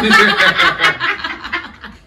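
A group of people laughing together, in quick bursts, loudest in the first second and dying down near the end.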